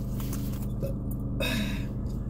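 Steady low hum of a parked car's idling engine, with brief rustling as a fabric cosmetic bag is handled, loudest about one and a half seconds in.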